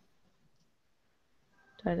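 Near silence: room tone through a headset microphone, with one spoken word near the end.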